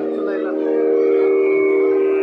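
A nadaswaram, the South Indian double-reed wind instrument, holding one long, steady, reedy note that swells about half a second in.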